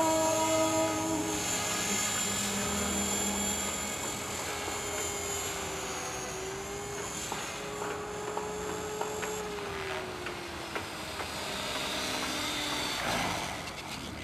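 Align T-Rex 500 ESP electric radio-controlled helicopter in flight: a steady high whine from its motor and rotor, with a lower tone that sags slightly in pitch midway. The high whine fades out about two-thirds of the way through.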